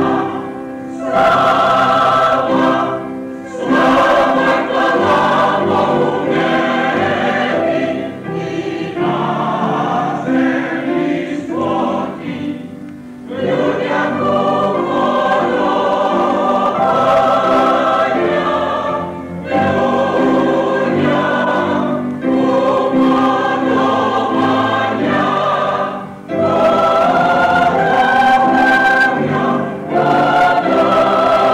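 Mixed choir of men's and women's voices singing a Ukrainian Christmas song in harmony. The phrases are held for a few seconds each and are separated by short breaks.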